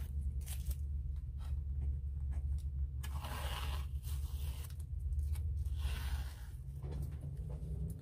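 Masking tape being peeled off the edges of watercolour paper, in a few drawn-out rasping rips with pauses between. A steady low hum runs underneath.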